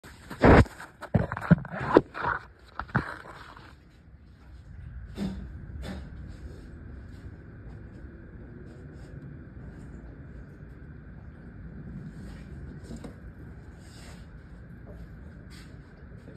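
Loud knocks and clatter from the phone being handled and set in place during the first four seconds, then a steady low background hum with a faint steady whine and a few light clicks.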